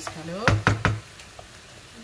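Three quick knocks about half a second in: a wooden spoon rapped against the rim of an aluminium frying pan after stirring chicken and peas.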